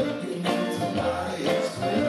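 Live band music with a steady beat, led by a stage piano, with a man singing.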